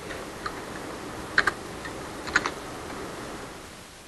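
A few scattered computer keyboard keystrokes, in two short clusters about a second and a half and two and a half seconds in, over a steady low room noise.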